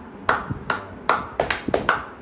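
One person clapping his hands: about seven sharp claps in two seconds, unevenly spaced and coming faster toward the end.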